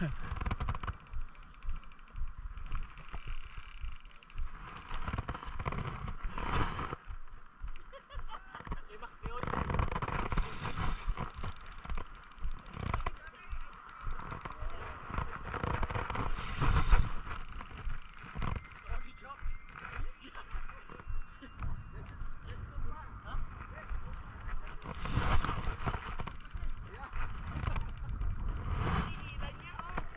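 Voices talking, with irregular bumps and rubbing of handling noise close to the microphone.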